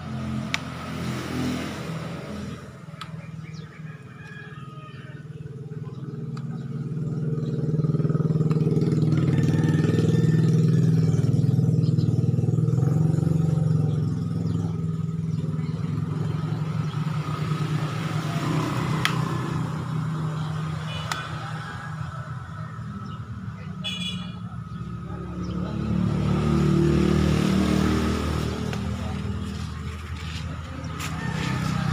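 A motor vehicle's engine builds up, runs loudest about ten seconds in and fades away, then rises again near the end, as a vehicle passes by.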